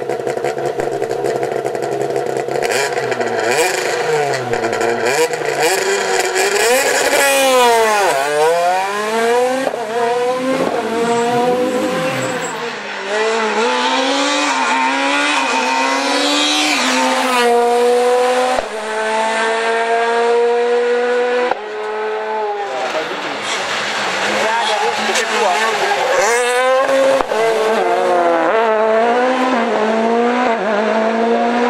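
Ford Fiesta S2000 rally car's high-revving, naturally aspirated 2.0-litre four-cylinder engine driven flat out. The revs climb and drop abruptly at each gear change, and the pitch falls steeply as the car passes close by.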